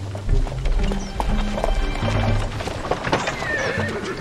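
A horse drawing a carriage, its hooves clip-clopping at a walk, with a horse whinnying near the end over background music.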